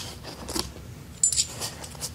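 Small hard parts clinking and rattling as they are handled and lifted out of a packed box. There are a few short clinks about half a second in, and a quick cluster just past the middle.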